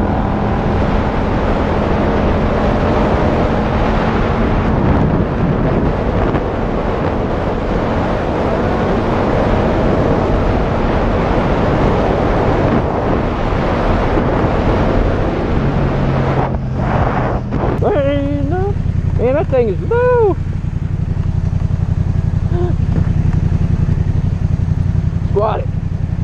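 Yamaha FZ-07 parallel-twin engine running under way with heavy wind rush on the helmet-mounted microphone, then settling to a steady idle about two-thirds of the way through as the bike comes to a stop.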